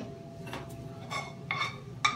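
A few light clinks and scrapes of a small saucepan and metal spoon being picked up and handled.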